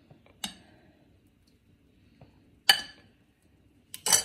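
A serving ladle clinking against ceramic bowls as soup is dished out: a light clink about half a second in and a sharper, louder clink near three seconds, with near quiet between.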